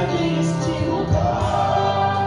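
Live gospel worship music: a group of voices singing held notes together over a steady low accompaniment.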